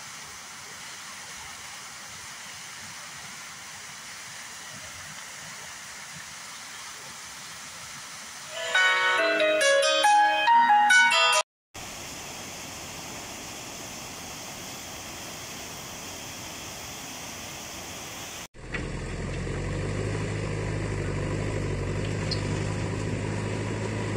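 Water gushing from a burst 1000 mm pipeline, a steady rushing noise. A louder pitched passage breaks in about nine seconds in and cuts off abruptly. From about eighteen seconds a low steady hum takes over.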